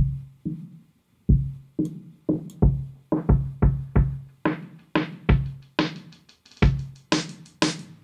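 Drum loop played back through an EQ high-cut (low-pass) filter that sweeps open. It starts muffled, as if under water, with only the low kick and thuds, and brightens steadily until the hats and claps come through in full near the end.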